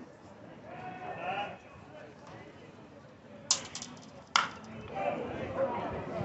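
Two sharp knocks of ball play at a baseball game, a little under a second apart. The first trails off in a short rattle. A voice calls out about a second in, and more voices follow the knocks.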